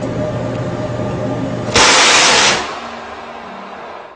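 A ship's gun firing, one loud blast about two seconds in that lasts under a second and then fades, over a steady rumble and hiss.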